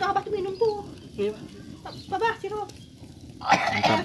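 A person's voice making short, untranscribed murmured or hummed syllables in several brief spurts with pauses between, the last spurt near the end being the loudest.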